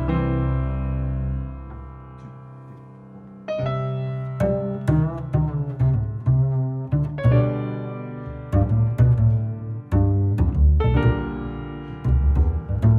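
Jazz duo of grand piano and upright double bass. A held chord fades over the first few seconds, then the plucked bass line and piano chords come back in and play on.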